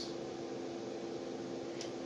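Steady mechanical hum of room equipment, with a few faint steady tones and a faint tick near the end.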